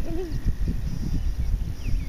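Wind buffeting the microphone, a gusting low rumble, with a short voice sound near the start.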